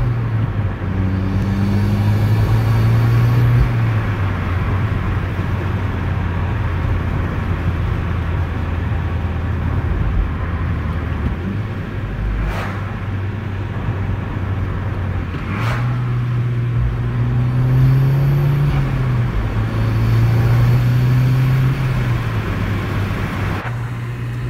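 Mk6 Volkswagen Golf R's turbocharged 2.0-litre four-cylinder, fitted with an ECS Luft-Technik cold air intake, pulling gently through the gears, heard inside the cabin with the window down. The engine note climbs in several pulls over steady road and wind noise, with two short sharp sounds about halfway through.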